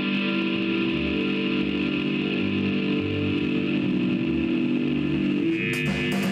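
Electric guitar holding a droning chord, with electric bass notes changing underneath about twice a second. The chord shifts a little before the end.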